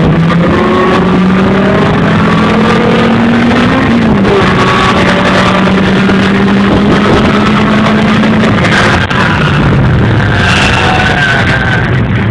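1997 Honda Prelude's four-cylinder engine under hard acceleration, heard from inside the cabin. Its pitch climbs for about four seconds until a gear change drops it, then it holds at high revs before falling to lower revs about nine seconds in, with steady wind and road noise underneath.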